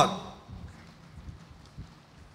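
The echo of a name called over the PA fades out in the large hall in the first half-second; then faint hall ambience with light, irregular footsteps of a graduate crossing the stage.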